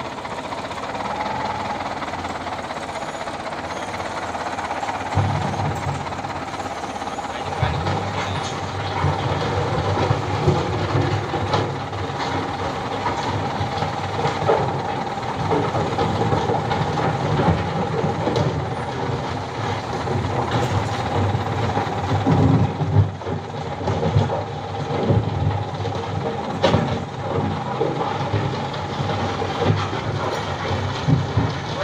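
Caterpillar 936F wheel loader's diesel engine working under load as it pushes a broken-down tanker truck along a dirt road. The engine rumble grows heavier about five seconds in, over a steady whine, with scattered metallic clanks and rattles.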